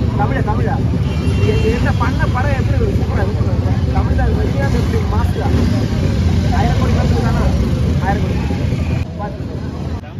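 Voices talking over a loud, steady low rumble of road traffic; the rumble drops away sharply about nine seconds in.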